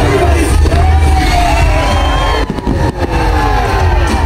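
A fireworks display, with shells launching and bursting over loud show music and a cheering crowd. A few sharp bangs stand out past the middle.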